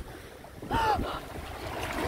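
Wind noise on the microphone with a low rumble, and one short high-pitched vocal sound from a woman about a second in.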